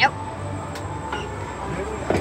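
Over-shoulder restraint bars of a Slingshot reverse-bungee ride capsule unlocking with one sharp clunk at the start, then rising, over a steady mechanical background.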